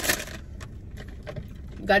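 Plastic snack bag crinkling as a hand reaches into it, then a few faint scattered clicks.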